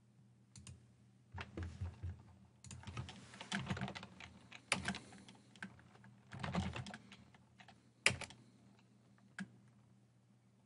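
Computer keyboard typing in several short bursts of keystrokes, with a few single, sharper key clicks in between, the loudest about eight seconds in.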